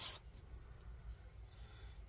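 A wooden bellows board rubbed on 120-grit sandpaper, its last stroke ending a moment in; faint room tone follows as the sanding stops.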